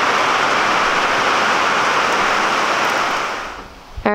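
Steady rush of floodwater running across a saturated barn floor as water wells up out of the ground; it fades out near the end.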